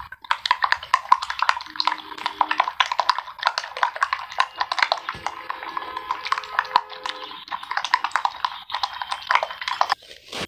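A utensil beating raw egg mixture in a glass bowl, clinking rapidly and rhythmically against the glass.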